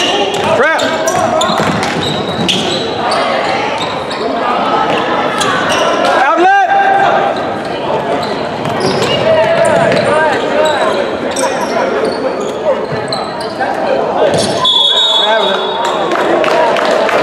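Basketball game in a gymnasium: a ball bouncing on the hardwood floor, sneakers squeaking a couple of times, and echoing voices of players and spectators.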